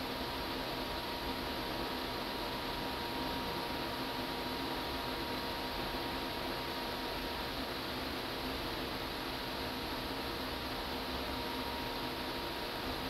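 Steady, even hiss of background noise, with a faint steady tone that fades out about two-thirds of the way through.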